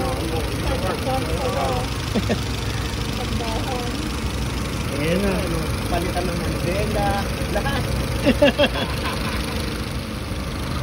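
Honda Accord engine idling steadily under the open hood. It is running hot with the coolant boiling, which the mechanic takes for a thermostat that probably no longer opens.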